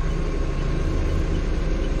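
Doosan 4.5-ton forklift's engine running steadily, heard from the operator's cab as an even low hum.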